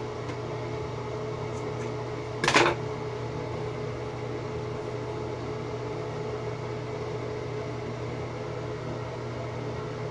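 Steady hum of a room ventilation fan running, with a short burst of noise about two and a half seconds in.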